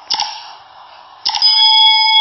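Subscribe-button animation sound effect: a sharp click with a short swish of noise, then about a second later a couple of quick clicks and a bright bell ding that holds a steady ring.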